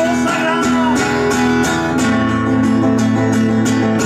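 Steel-string acoustic guitar strummed in a steady rhythm, an instrumental break between sung lines of a song; the chord changes about halfway through.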